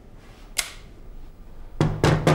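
Smith & Wesson .357 Magnum revolver's cylinder being closed on a loaded dummy cartridge: a single sharp metallic click about half a second in.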